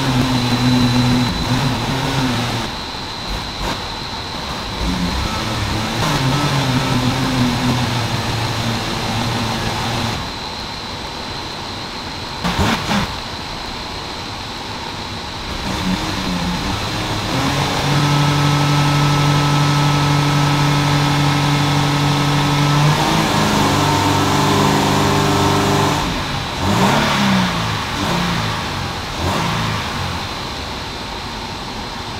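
Toyota GT86's flat-four boxer engine, fitted with an unequal-length header and one catalyst removed, running under load on a hub dyno. The revs climb and hold steady several times, with the longest hold lasting about five seconds two-thirds of the way in, then fall and rise again near the end. The header gives it a real Subaru-style boxer sound.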